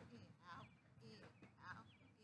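Geese honking faintly in a series of short calls, about two a second.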